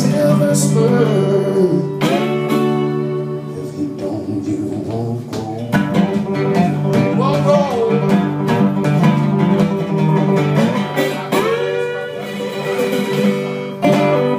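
Solo acoustic guitar playing a blues instrumental passage, ending on a strong strummed chord near the end.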